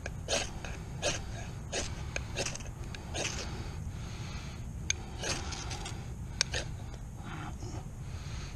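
A ferrocerium (ferro) rod scraped with the spine of a knife, striking sparks: about eight quick rasping strokes, roughly one every 0.7 s, with a break in the middle.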